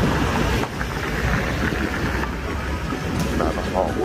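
Steady low rumble of city traffic mixed with wind buffeting a phone's microphone, with faint voices near the end.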